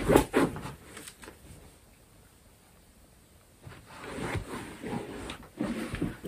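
Soft rustling and shuffling of a person shifting and turning round on a fabric sofa, once in the first second and again after a quiet gap of about two seconds.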